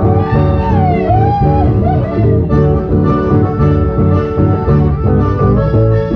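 Live chamamé band of acoustic and electric guitars with accordion playing with a steady pulsing beat. A wavering melody line slides up and down in pitch in the first second or so.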